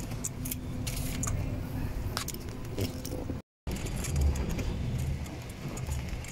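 Rumble and rattling of a ride in an open-sided passenger cart, with scattered clicks and light metallic jangling. The sound cuts out for a moment a little past halfway, then the same ride noise resumes.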